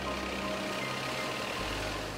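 Road traffic driving through a flooded street: vehicle engines and a steady wash of water thrown up by the wheels.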